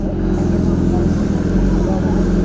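A motorcycle engine idling steadily.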